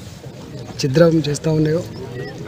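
A man speaking in Telugu, starting after a short pause.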